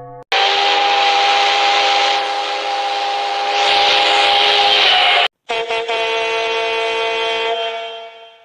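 A steam locomotive's chime whistle sounds for about five seconds, a chord of tones over a hiss of steam. After a brief break a multi-tone diesel locomotive air horn sounds and fades out near the end.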